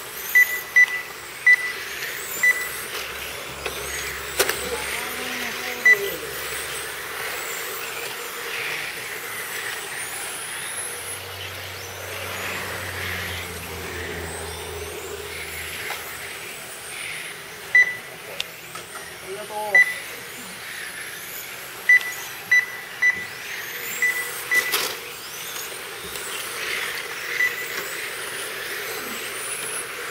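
Several radio-controlled touring cars racing on asphalt, their motors giving thin high-pitched whines that rise and fall as they brake and accelerate. Short electronic beeps at one pitch sound again and again at irregular intervals, in clusters near the start and in the second half.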